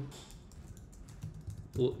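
Computer keyboard typing: a run of light, irregular keystrokes. A man's voice starts speaking near the end.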